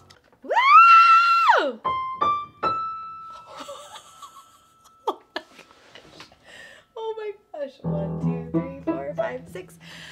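A voice slides up to a high held note and back down. Then three piano notes step upward to the same pitch, around E6, the last one left ringing. Near the end a voice and low sustained notes come in.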